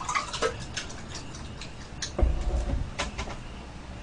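Orange juice poured from a metal pitcher into a glass, with small clicks and trickling, then drinking from the glass with a low, dull gulping sound from about two seconds in.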